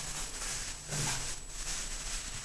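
Plastic bags being handled and opened, a soft rustle over steady background hiss, around a packet of dry-salted mackerel fillets.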